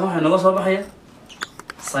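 A man's voice speaks for the first second. Then a marker makes a few short squeaks and taps on the whiteboard, about one and a half seconds in, as writing starts.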